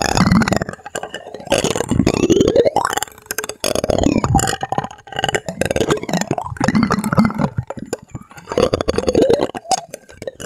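White plastic spoons scraped and rubbed against the plastic dome of a star projector, making a rasping, grating scrape. It comes in about six strokes of roughly a second each, with short gaps between them.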